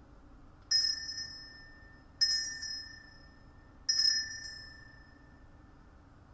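Small altar bell (sanctus bell) rung three times, each stroke ringing clearly and dying away over a second or so. It marks the elevation of the chalice at the consecration.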